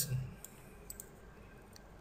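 A few faint, sharp clicks against low background hiss, in a pause in the narration.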